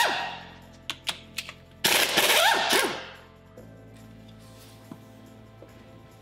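Pneumatic impact wrench hammering bolts out of an outboard powerhead: the tail of one burst fades at the start, then a few sharp clicks, then a second burst of about a second whose pitch rises near its end as the bolt spins free.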